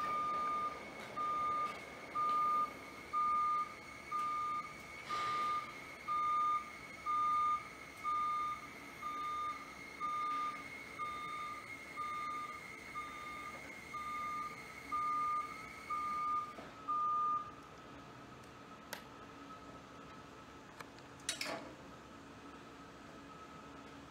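Grove SM2632BE scissor lift's motion alarm beeping about once a second as the platform lowers, over a steady high whine. The beeping and whine stop about three-quarters of the way through as the platform comes fully down, followed by a couple of sharp clicks.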